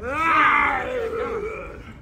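A man's loud, drawn-out groan, rising and then falling in pitch over about a second and a half.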